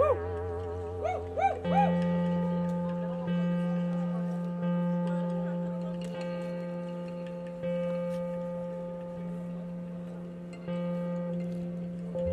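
Synthesizer tones through the PA: the sound starts suddenly with a wavering pitch and a few upward swoops, then settles into a steady low drone under a held higher note, shifting slightly every second or two.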